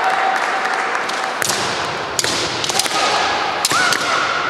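Bamboo shinai cracking against each other and against armour in a kendo bout: about four sharp strikes over the last two and a half seconds, with the hall's echo after each. Near the end a long, high kiai shout rises and then holds.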